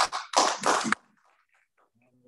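A congregation clapping hands in praise, a few loud bursts of applause for about a second that cut off suddenly into silence.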